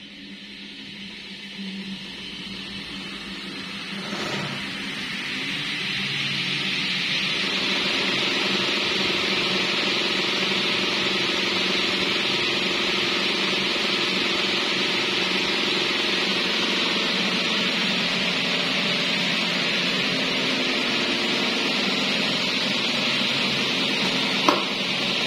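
Several electric stand and desk fans fitted with homemade modified blades spinning together, a rush of air over a low motor hum. It grows louder over the first several seconds as the fans come up to speed, then runs steadily.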